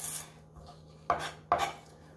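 Knife slicing celery stalks on a wooden cutting board: a brief scraping slice at the start, then two sharp knife strikes on the board about a second in, half a second apart.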